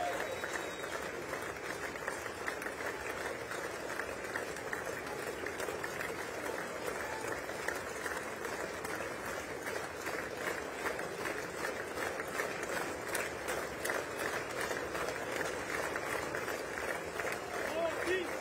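Sustained applause from a large crowd of lawmakers, a dense, even patter of many hands clapping, with crowd voices mixed in.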